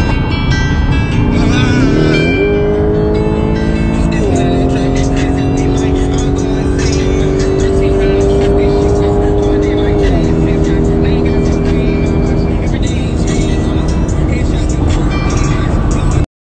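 Car engine accelerating hard over a low rumble: its pitch climbs, then drops sharply about four seconds in and again about ten seconds in, as at upshifts, rising slowly between.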